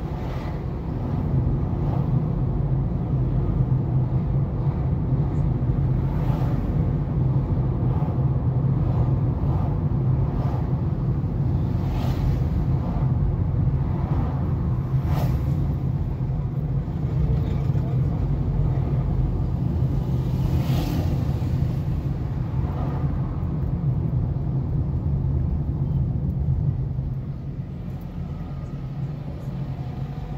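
Steady low hum of a car's engine and tyres heard from inside the moving car in city traffic, with a few brief swells from passing vehicles. It grows quieter about three seconds before the end as the car eases off.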